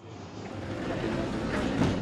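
Factory ambience of a car assembly hall: a steady rushing machinery noise that swells in level.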